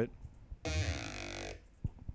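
Dubstep growl patch in the Native Instruments Massive software synth, still on its default settings, played through the WOW vowel filter for about a second. It plays in monophonic mode with slide on, so the notes glide into one another, which the producer finds sounds much better.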